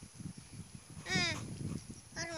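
A young child's short, high-pitched whining call that falls in pitch, about a second in.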